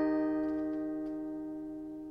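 Mountain dulcimer's final strummed chord ringing out and fading steadily, with a few faint ticks about half a second to a second in.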